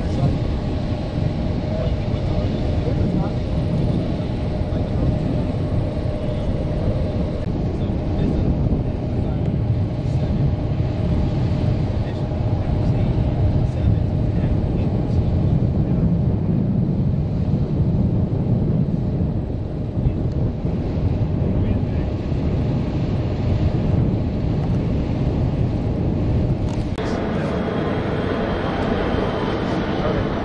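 Steady low mechanical rumble with a faint hum, typical of machinery running on an airfield flight line. About three seconds before the end it turns brighter and hissier.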